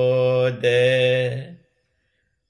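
A man chanting Sinhala metta (loving-kindness) verses in a slow, steady monotone, drawing out the closing vowels of the line with a short break about half a second in. The chant stops about one and a half seconds in.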